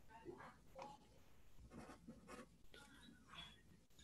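Near silence, with faint, irregular scratching sounds of someone writing out a motion.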